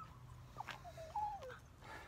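A dog whining faintly: one short, wavering whimper of about a second that falls in pitch at the end.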